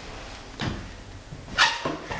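Rubber balloons being batted by a baby's hands: a soft knock about half a second in, then a louder, briefly pitched rubbery sound near the end.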